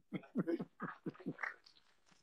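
Laughter: a quick run of short ha-ha pulses over about a second and a half, then stopping.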